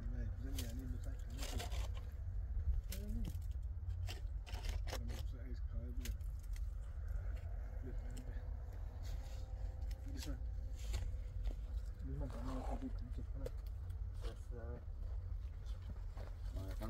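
Men's voices talking now and then, over a steady low rumble, with scattered short clicks and scrapes.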